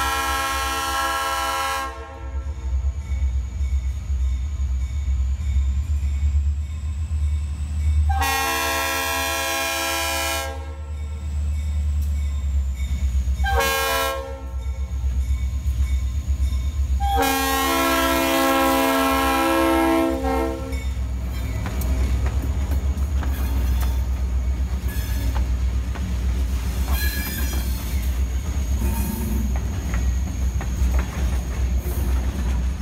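Diesel freight locomotive's multi-tone air horn sounding the grade-crossing signal, long, long, short, long, over the steady deep rumble of the diesel engines; the last long blast is the loudest as the locomotives pass. After it, the freight cars roll by with their wheels clicking over the rail joints.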